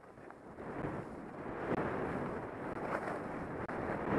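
Wind rushing over the microphone together with the hiss of skis sliding on snow during a downhill run, building up over the first second as the skier gathers speed.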